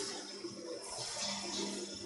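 Quiet room tone: a faint steady hiss with a low, even hum underneath.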